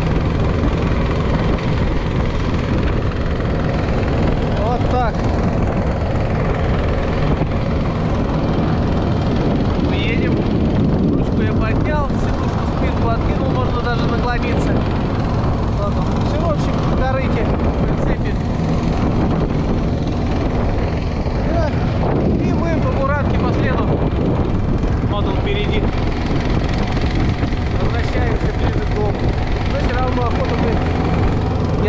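Motorised snow dog's small engine running steadily under load as it tows two laden sleds over packed snow, heard from the towed sled.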